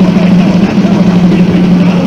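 Harsh, heavily distorted electric guitar holding one low note in a lo-fi death/doom cassette demo recording, loud and steady, over a wash of noise.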